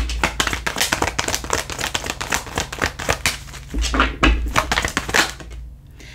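A deck of tarot cards being hand-shuffled: a fast, uneven run of light papery clicks and flutters as the cards slide and slap together, thinning out near the end.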